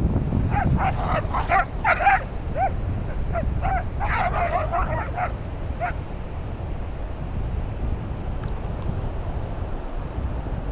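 Salukis yipping in a quick series of short, high calls that stop about six seconds in, over wind rumbling on the microphone.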